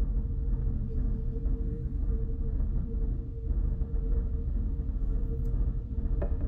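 Steady low rumble of room noise with a faint constant hum running under it.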